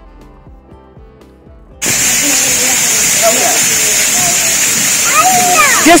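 Faint music for the first two seconds, then a sudden cut to the loud, steady hiss and splash of ground-level fountain jets spurting up from paving, with voices faintly behind.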